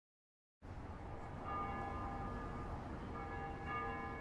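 Quiet trailer soundtrack ambience: about half a second in, a low steady rumble fades up with several faint high tones held over it, which break off briefly midway and then return.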